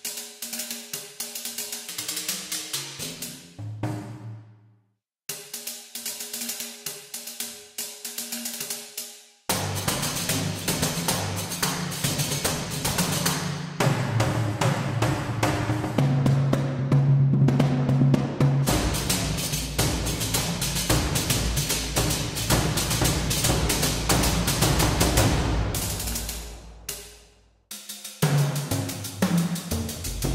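Sampled riq, a frame drum with metal jingles, played from a keyboard through a virtual instrument: fast finger strokes with jingle rattle in two short phrases, then from about ten seconds in a denser, louder run of rapid hits. Deeper, fuller drum strokes join in the latter part. The run stops for a moment near the end and starts again.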